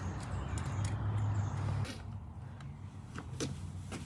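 Quiet, steady low hum with a couple of faint light clicks in the second half.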